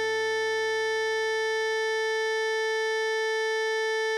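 An electronic alto saxophone sound holds one long, steady note, fingered F#5. A low backing tone underneath cuts off about three seconds in.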